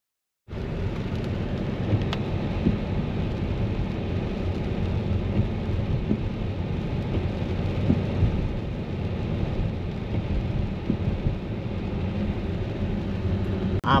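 Steady low rumble and hiss of a car driving on a wet road in the rain, heard from inside the cabin, with a few faint clicks. It begins abruptly about half a second in.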